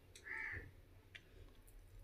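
A crow cawing once, short and faint, about half a second in, against an otherwise quiet room.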